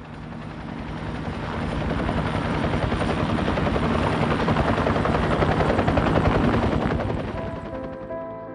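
Erickson S-64 Air-Crane helicopter passing overhead, its rotor chop swelling, loudest a little after the middle, then fading away near the end as soft music comes in.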